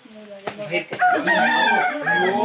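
A rooster crowing loudly, starting about halfway through.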